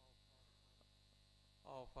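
Near silence with a faint steady electrical hum, as from a microphone and sound system; a man's speech resumes near the end.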